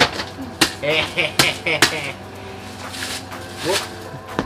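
Bubble-wrap plastic being handled and pulled off a camera bag, with about six sharp crackling snaps, most of them in the first two seconds. Voices or laughter are heard between the snaps.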